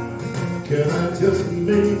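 Band playing an alternative-swing arrangement in an instrumental passage, with the sung melody coming back in right at the end.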